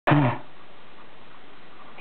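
A single short vocal call with falling pitch right at the start, then steady low room noise.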